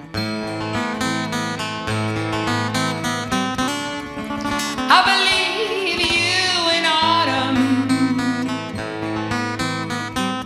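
Two acoustic guitars playing an instrumental passage, picked and strummed. About five seconds in, a wordless sung line with vibrato comes in over them.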